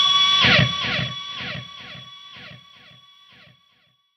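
Electric guitar ringing out at the end of a song, its notes repeating about twice a second and growing steadily fainter until they die away about three and a half seconds in.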